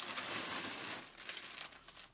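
Thin plastic bags crinkling as a plastic mailer package is pulled out of a plastic carrier bag, loudest in the first second, then a softer rustle.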